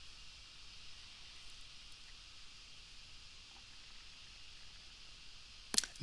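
Faint steady hiss of room tone and microphone noise, with a few very faint ticks. A man's voice cuts in just before the end.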